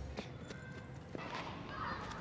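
Faint footsteps on a paved path, a few scattered steps over quiet outdoor background.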